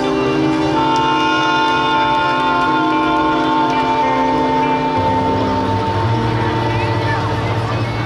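Jazz band with tenor and alto saxophones and electric guitar holding long sustained notes together, with a deep low note coming in about five seconds in: the final chord of the tune.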